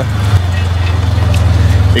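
Side-by-side UTV engine running with a steady low drone, heard from inside the open cab, with a brief click about a third of a second in.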